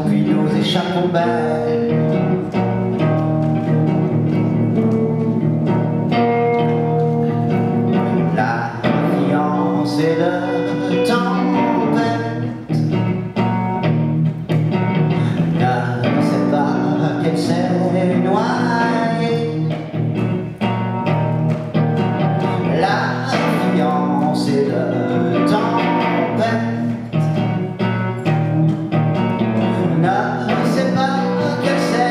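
Live song: a man singing over guitar and string accompaniment.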